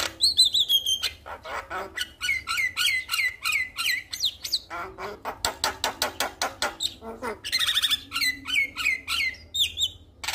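Male Javan myna singing: a rapid, varied run of clicks, harsh squawks and whistled notes. It opens with a falling whistle, then a string of repeated wavering notes about two seconds in, and a harsh buzzy call near the eight-second mark.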